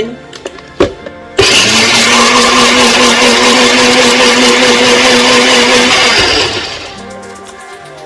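Personal bullet-style blender grinding pomegranate seeds: after a click, the motor starts abruptly about a second and a half in, runs loud and steady with a constant hum for about five seconds, then winds down as it is released.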